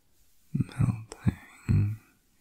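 A man talking softly and close to the microphone, starting about half a second in, in a soft-spoken ASMR voice.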